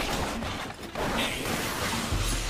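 Anime fight sound effects: the whirring, clanking mechanisms of omni-directional mobility gear and rushing air as fighters clash, with a short laugh near the end.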